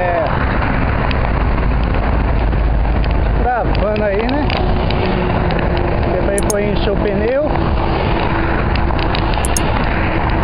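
Loud, steady wind rush on the microphone of a camera riding on a moving bicycle, mixed with highway traffic noise. A few short rising-and-falling pitched sounds cut through it.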